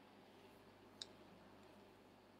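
Near silence: quiet room tone, with one faint, short click about a second in.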